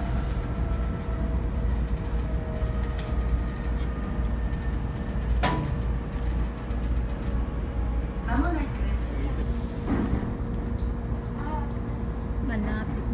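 Cabin sound of a Shinano Railway electric train running: a steady low rumble of the wheels on the rails with a constant hum. A single sharp click comes about five and a half seconds in.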